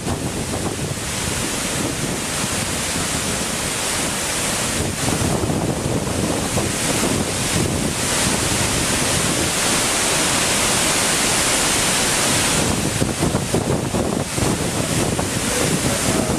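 Hardraw Force waterfall in spate after a night's rain: a loud, steady rush of heavy falling water and the churning, flooded stream below it.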